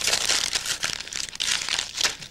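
A sheet of paper being crumpled by hand into a ball, a loud crackling rustle that eases briefly about a second in and then resumes.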